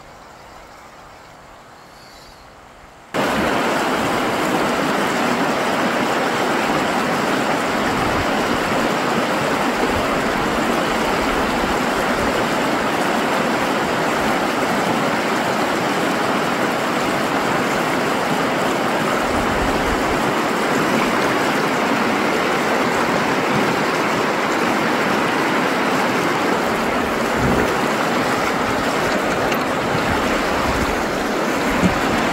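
Loud, steady rushing of a shallow, rocky river's rapids, cutting in suddenly about three seconds in after a quieter stretch.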